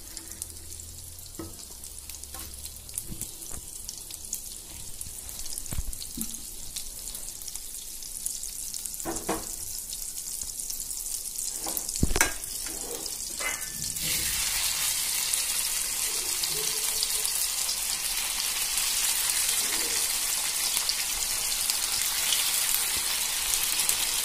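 Butter sizzling and crackling softly in a nonstick frying pan, with a couple of sharp knocks partway through; about two-thirds of the way in the sizzling jumps much louder and fuller as marinated chicken pieces fry in the butter.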